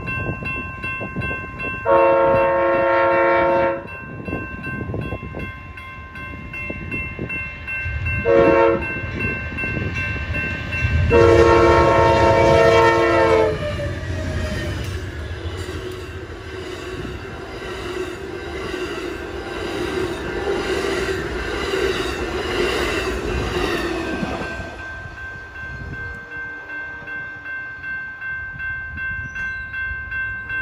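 Amtrak passenger train sounding its multi-chime locomotive horn for a grade crossing: a long blast about two seconds in, a short one, then another long one. The train then passes close by, its bilevel cars rumbling and clattering rhythmically over the rails for about ten seconds before fading away, with the crossing's warning bell ringing underneath throughout.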